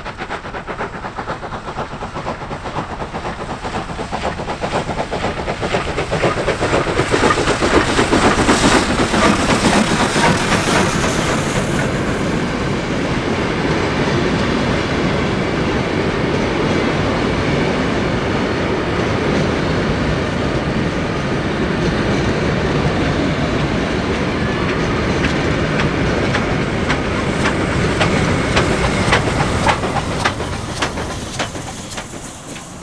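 Victorian Railways Y-class steam locomotive Y112 working hard with a passenger train, its fast exhaust beats growing louder as it passes close about eight to eleven seconds in. After it come the carriages, their wheels clattering over the rail joints, with sharper clicks near the end.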